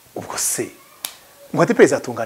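A man speaking in short, broken phrases, with one sharp click about halfway through.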